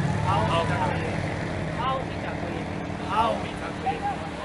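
Several voices calling out short words and syllables one after another, over a low rumble that fades away in the first second or two.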